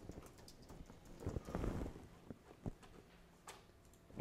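Faint, irregular clicking of computer keyboard keys as text is typed.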